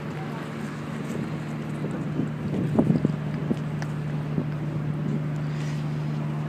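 Street ambience: a steady low hum, with a cluster of clicks and knocks in the middle and wind noise on the microphone.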